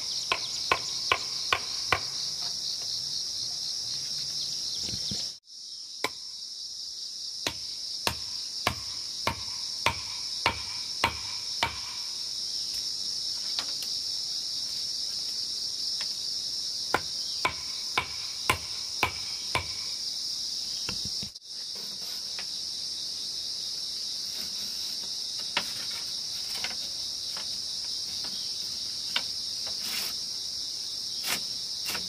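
Wooden mallet knocking on bamboo and wood in runs of sharp strikes, about two a second, with pauses between runs. A steady high chirring of insects runs underneath.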